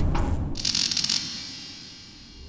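Sound effects for an animated title logo: a brief rising sweep at the start, then a bright hissing shimmer about half a second in that cuts off sharply after less than a second, over a low rumble that fades away.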